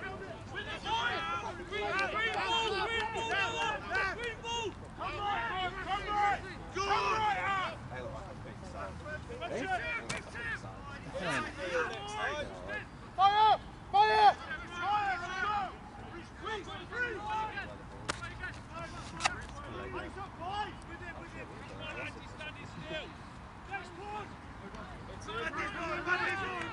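Players on a rugby pitch shouting calls to each other in the open air, in bursts throughout, loudest about halfway through, with a few sharp knocks.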